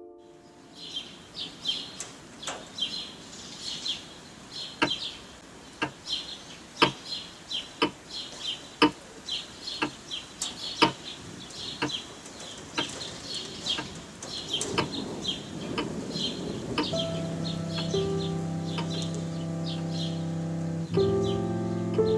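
Birds chirping over sharp, evenly spaced ticks about once a second. Sustained music chords fade in near the end and grow louder.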